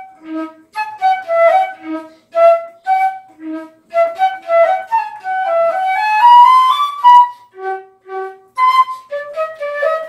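Solo concert flute playing a lively melody in short, separated notes that jump between low and high. About two-thirds of the way through it climbs in a quick rising run of notes, the loudest part.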